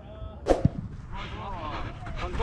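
A single loud, sharp bang with a low thump about half a second in, followed by voices calling out.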